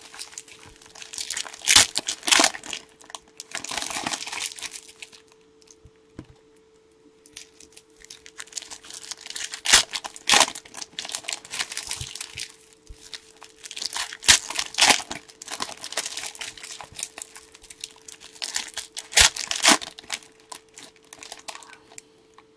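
Crinkling of a fistful of torn-open foil trading-card pack wrappers, coming in irregular bursts with several sharp crackles, while cards are handled. A faint steady hum runs underneath.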